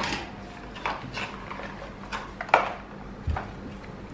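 Hands handling the Mi Band 3's cardboard box, clear plastic insert and paper manual: a few short clicks and light rustles, the sharpest about two and a half seconds in, with a dull knock a little after three seconds.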